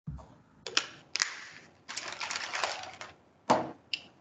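Handling noise picked up by a microphone: irregular bursts of rustling and a few sharp clicks. A longer rustle runs between about two and three seconds in, and the loudest click comes near the end.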